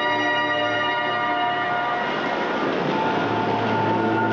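Music for a roller figure skating routine: sustained held chords, shifting to a new chord about three seconds in.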